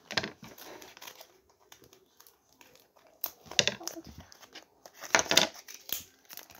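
Paper being handled and cut with scissors: rustling and crinkling, louder in short bursts about a third of a second in, around three and a half seconds, and just past five seconds.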